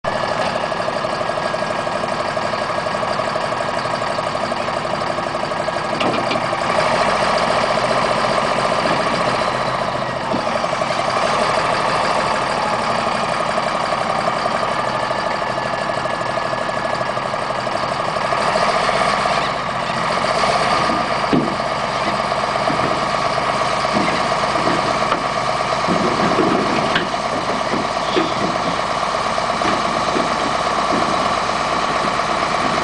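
Caterpillar D7H dozer's diesel engine running steadily as the dozer creeps back along a lowboy trailer deck. Short knocks come from the machine during the second half as it moves.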